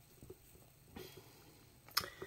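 Faint handling of a cardboard Oreo carton: fingers shifting and rubbing on the box with small soft ticks, and one sharp click near the end.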